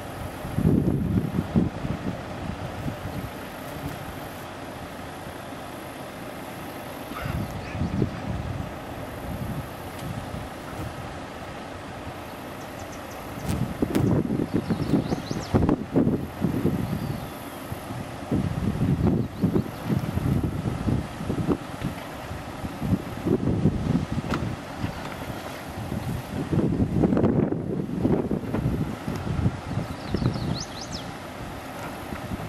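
Jeep Wrangler engine revving in repeated short surges as the Jeep crawls over rocks, settling back toward idle in between.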